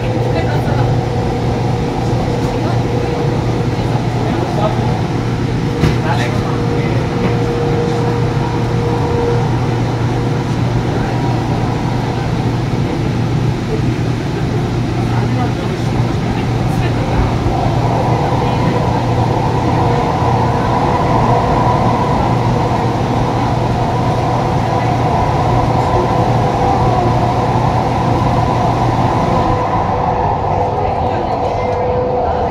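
Inside a moving light rail car: the steady running noise of the train on the track, with a low steady hum. A mid-pitched tone fades out about ten seconds in, and the noise grows a little brighter from about seventeen seconds.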